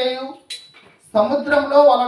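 A man's voice reading aloud in Telugu into a microphone, with a short pause about half a second in before he goes on.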